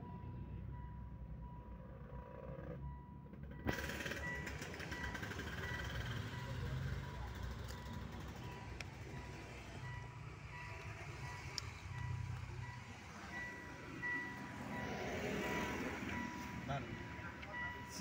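A steady high electronic tone, joined by a higher tone that beeps repeatedly from a few seconds in, over a low rumbling background.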